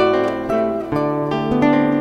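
Acoustic guitar playing a short instrumental phrase of plucked notes and chords that ring on, a new note about every half second.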